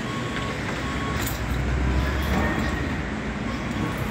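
Low rumble of a motor vehicle engine nearby, swelling about halfway through, with faint short high beeps.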